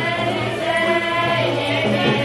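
Several voices singing together over musical accompaniment, with long held notes.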